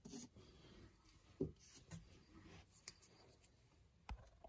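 Faint handling sounds: a metal lens adapter ring being picked up off a sheet of paper, with light rubbing and a few soft knocks, the clearest about a second and a half in.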